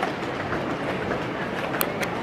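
Camera handling noise: a steady rushing rustle as the camera moves close against clothing, with a single sharp click near the end.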